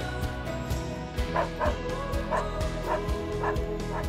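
Background music with a steady beat; over it, in the second half, a dog gives about five short calls in quick succession.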